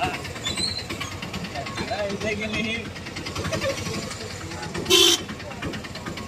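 Busy street hubbub with many background voices, and a short vehicle horn toot about five seconds in, the loudest sound.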